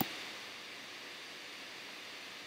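Faint steady hiss of the recording's background noise, with no other sound.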